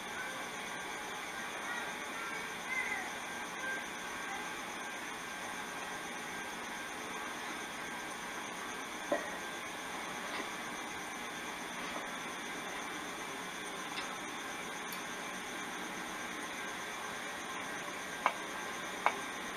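Steady hiss of a 1990s camcorder's own audio track, with a couple of faint clicks.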